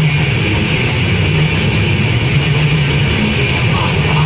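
Death metal band playing live at full volume, a dense wall of heavily distorted guitar holding low riff notes that shift every half second or so.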